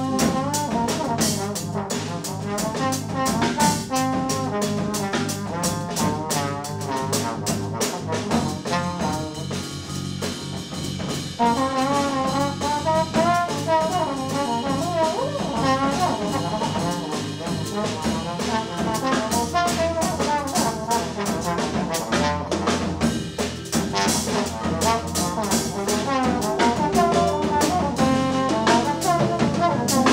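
Live experimental jazz ensemble playing, with wavering wind and brass lines over busy drum kit and cymbals; the horn lines grow louder about a third of the way in.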